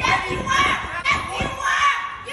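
High-pitched voices talking, with no words that can be made out.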